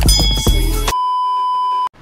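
Background music with a beat that stops abruptly, followed by a steady electronic beep lasting about a second that cuts off suddenly.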